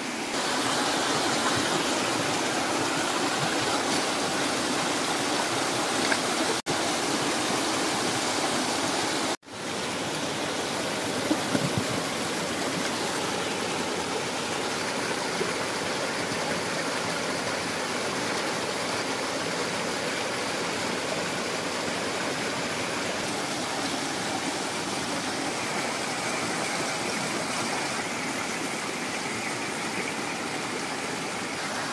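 Rocky mountain stream rushing over small cascades: a steady wash of running water, broken twice by brief gaps about a quarter of the way in.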